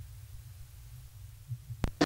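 Low, steady rumble on the microphone with a couple of soft thumps, then one sharp click near the end.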